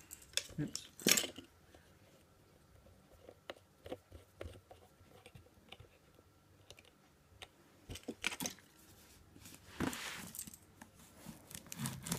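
Faint handling noise around a taped cardboard box: scattered small clicks and taps, with two brief rustles about a second in and near ten seconds.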